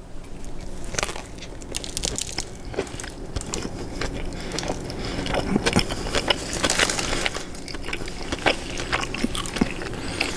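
A person biting into a Chicago-style hot dog on a poppy seed bun and chewing it, with irregular small crunches and clicks throughout.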